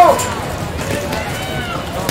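Shouting voices across an open field during play. A loud call ends with a falling pitch right at the start, then fainter, higher calls come about a second in, over steady outdoor background noise.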